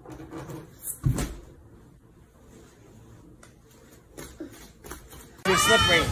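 A few soft knocks and thumps over a quiet room background, then loud excited voices and laughter starting near the end.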